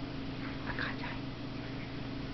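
Yorkshire terrier whining: a few short, high-pitched whimpers between about half a second and a second in.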